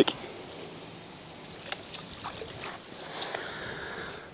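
Faint outdoor background by a river, with a few light, scattered ticks and no single clear sound event.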